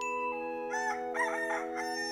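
A rooster crowing for about a second, starting about two-thirds of a second in, over a chime-like chord that is struck at the start and held.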